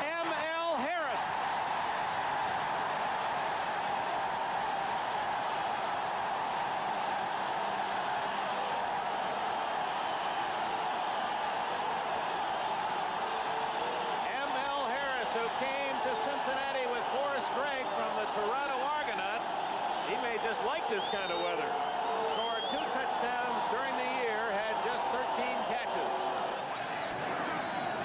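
Stadium crowd cheering steadily after a touchdown, with separate voices standing out of the roar from about halfway through.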